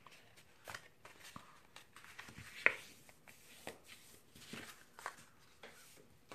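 Sheet of cardstock being folded in half by hand along its score line: faint paper rustling with scattered light taps and crinkles, the sharpest about two and a half seconds in.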